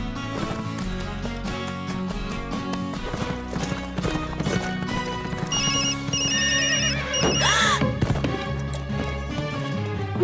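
Cartoon score with horse hoofbeats. About five and a half seconds in, a cell phone ringtone sounds: loud, quick repeated electronic beeps in three bursts. A horse whinnies as it spooks at the ringtone.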